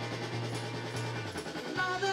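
Live rock band playing a new wave song: electric bass repeating a low note over the drum kit, with a woman's singing voice coming in near the end.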